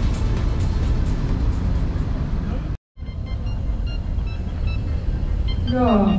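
Upbeat electronic background music with a steady beat, cut off abruptly a little under three seconds in. It gives way to live outdoor background noise: a steady low rumble with faint short high tones, and a man's voice starting at the very end.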